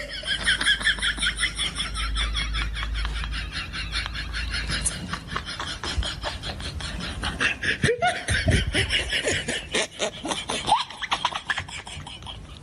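Laughter: a long run of quick, repeated giggling, with a short break about eight seconds in.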